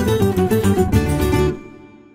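Closing bars of the show's bumper jingle, instrumental music led by plucked guitar, which stops about a second and a half in and rings out into silence.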